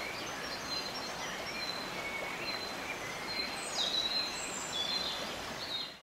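Birds chirping and whistling in short, scattered calls at several pitches over a steady outdoor hiss. The calls grow a little louder and busier near the end.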